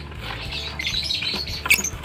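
A lovebird squawking while it is pushed into a wire-mesh cage, with the wire mesh scraping and rattling under the hand and a sharp click near the end.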